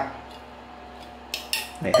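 Two short metallic clinks about a second and a half in, from the steel body of a hand-pump sprayer can being handled.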